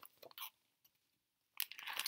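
Clear plastic zip-top bag with a paper card inside being handled and lowered: a few faint crackles at first, then a louder crinkling rustle near the end.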